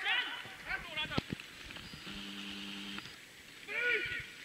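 Distant shouting on a football pitch: a few short calls in the first second or so and another just before the end. A steady pitched tone sounds for about a second in the middle.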